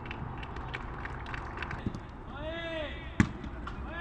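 Footballs being kicked on a grass training pitch: a string of sharp kicks and touches, with one much harder strike a little after three seconds in. Players' shouts come in between.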